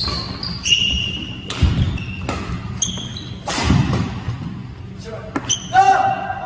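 Doubles badminton rally: sharp racket hits on the shuttlecock a second or two apart, with short high squeaks of court shoes on the wooden floor, echoing in a large hall.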